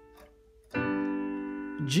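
Digital piano: the last of a D minor chord fades out, then a G major chord is struck about three-quarters of a second in and held, slowly decaying.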